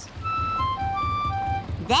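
Small cartoon boat's engine chugging low and steady, with a short tune of plain, high single notes playing over it.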